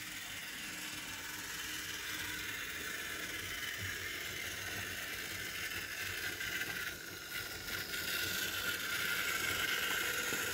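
Märklin HO model diesel locomotive (DHG 500) hauling a train of freight wagons on metal track: a steady mechanical rattle of small wheels and motor that grows louder near the end as the train comes close.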